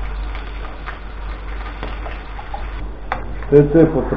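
Stuffed potato pancakes bubbling in a frying pan: a steady soft sizzle with a few faint ticks, over a constant low hum. A man starts speaking near the end.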